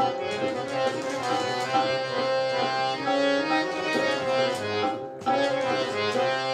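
Harmonium playing a melody in Raag Todi over a steady drone, with a tabla rhythm underneath. The music drops out briefly just after five seconds, then resumes.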